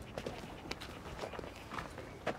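Footsteps on paving: a few scattered, irregular steps.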